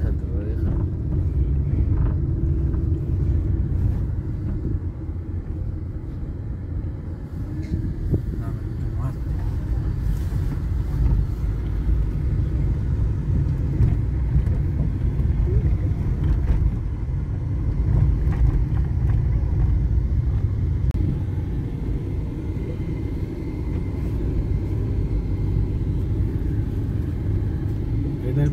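Car driving on a rough, unpaved dirt road, heard from inside the cabin: a steady low rumble of tyres and running gear.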